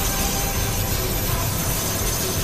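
Steady rushing roar of an animated energy-charging sound effect as a crackling chakra sphere builds, with a faint high whine held over it.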